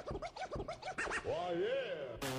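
Dance-track music with turntable-style scratching of a vocal sample, chopped into fast up-and-down pitch sweeps that end in a wavering, warbling tone near the end.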